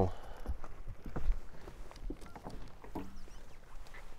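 Scattered light knocks and rustling of someone moving about on a fiberglass bass boat's deck, with a storage compartment lid being lifted near the end.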